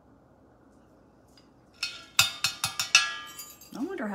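Metal measuring spoon clinking against the rim of the mixing cup, about six quick ringing taps after a quiet start, knocking off the last of the grenadine.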